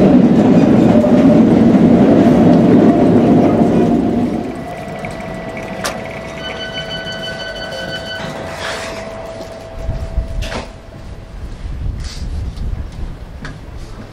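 Train noise: loud running for about four seconds, then dropping away to a lower level with a steady hum. A high tone sounds for about two seconds midway, and a few short knocks follow.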